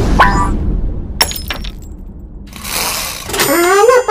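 Intro sound effects for an animated logo: a swelling whoosh with a low rumble and sharp crash-like hits in the first second and a half, a second whoosh near three seconds, then a pitched sound rising in pitch near the end.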